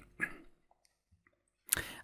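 A faint click shortly after the start, then a near-silent gap, then a sharp click with a short breath near the end.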